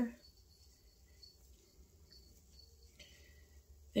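Near silence: quiet room tone with a low hum and a few faint, short high ticks while hands work in the hair.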